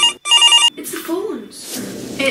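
Corded landline telephone ringing with an electronic warbling ringer: two short bursts in quick succession, the second ending just under a second in.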